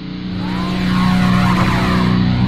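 Car engine sound effect: a steady engine drone that swells in loudness over the first second and then holds at a constant pitch.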